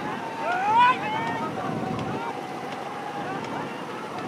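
Racing-boat crew shouting over the rush of river water and wind on the microphone, with one loud shout rising in pitch about a second in.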